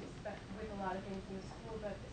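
Speech: a person talking, a little quieter than the surrounding talk.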